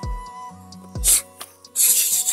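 Background music with a flute-like melody and falling bass drops. Two loud rubbing, rasping noise bursts come through it, one about a second in and one near the end.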